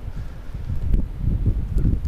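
Blizzard wind buffeting the microphone: a low, uneven rush that rises and falls with the gusts.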